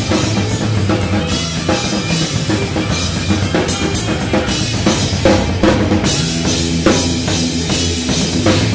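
Live instrumental metal jam: a drum kit with kick drum, snare and cymbals played hard and steadily over distorted guitars and bass, with no vocals.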